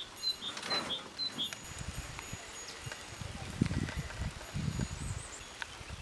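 Outdoor ambience: a small bird chirping several times in quick succession during the first second or so. From about a second and a half in, irregular low rumbling bumps follow, with a few faint knocks.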